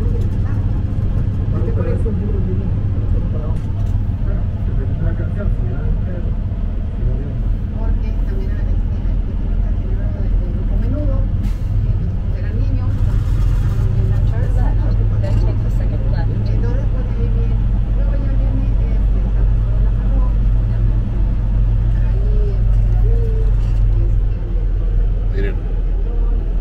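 Steady low drone of a semi-truck's diesel engine idling, heard from inside the cab, with some faint speech over it.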